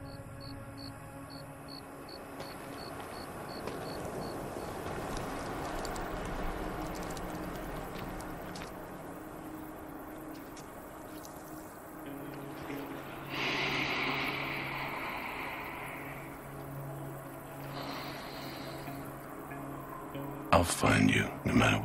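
Background film score built on sustained low tones, with a faint high ticking pulse for the first few seconds. A rush of hiss swells about thirteen seconds in and fades by sixteen, and a shorter one comes near eighteen seconds.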